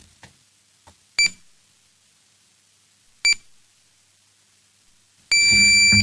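Electronic voting system beeping: two short high beeps about two seconds apart, then one longer beep of under a second near the end, marking the close of the vote.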